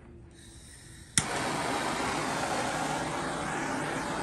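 Handheld propane torch being lit: a faint hiss of gas, a sharp click of the igniter about a second in, then the steady roar of the flame burning.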